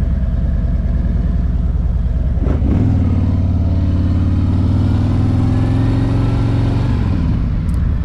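2021 Harley-Davidson Road Glide's Milwaukee-Eight 107 V-twin running under way. About three seconds in, the engine note grows stronger and climbs slowly under throttle, then falls away shortly before the end as the throttle is rolled off.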